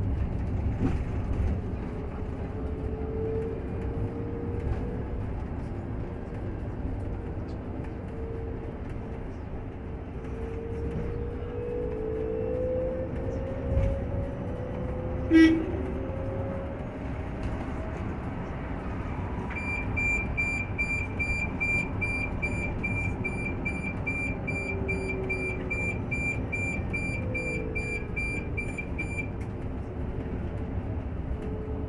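Cabin of a moving Olectra electric bus: steady road and tyre rumble, with a faint whine gliding up and down in pitch as speed changes. A single sharp click comes about halfway through. In the second half a rapid electronic beep repeats about two and a half times a second for about ten seconds.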